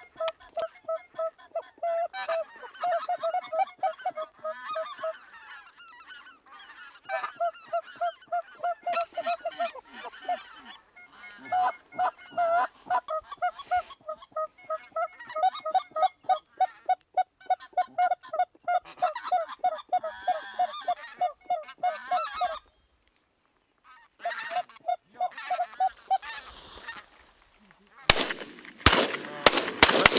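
Hand-blown goose calls sounding long runs of evenly spaced honks, about four a second, with short pauses between runs: calling to lure a flock of geese in. Near the end, several shotgun shots in quick succession.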